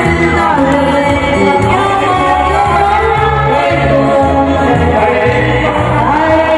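A woman singing through a handheld microphone over loud amplified backing music with a walking bass line.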